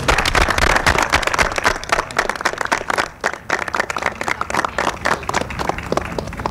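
A group of people applauding, a dense patter of hand claps that thins out in the second half.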